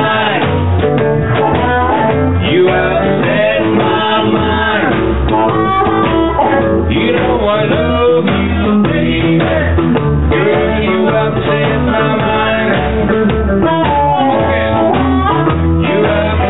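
Live blues band playing: electric guitar, upright bass and drums, with a voice singing at the microphone.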